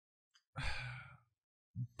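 A man's short audible breath into a close podcast microphone, about half a second long and starting about half a second in, with silence before and after.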